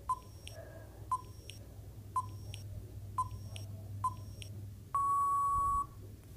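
Countdown timer sound effect: five short beeps about a second apart, then one long beep lasting about a second that marks time out.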